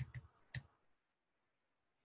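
Computer keyboard keystrokes: a few sharp key clicks in the first half-second, then near silence.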